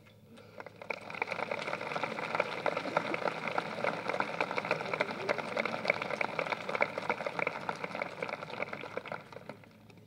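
Crowd applauding, many hands clapping at once; it builds within the first second and dies away near the end.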